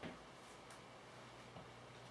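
Near silence: faint room tone with a couple of faint clicks.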